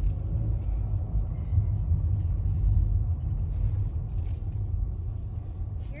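Car moving slowly, heard from inside the cabin: a steady low rumble of engine and tyre noise.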